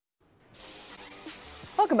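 Silence, then a show bumper's music fades in under airy whooshing swishes, as it returns from a break. A voice begins speaking just before the end.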